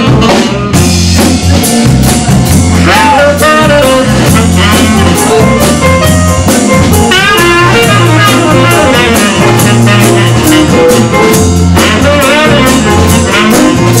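Live jazz-blues band playing: a saxophone plays a solo of bending, sliding phrases over a steady bass line, drum kit and electric guitar.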